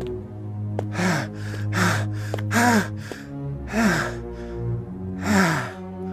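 A man's ragged, breathy gasps and groans, about seven of them, several falling in pitch, as of someone exhausted and near collapse. Sustained, held notes of a dramatic music score run underneath.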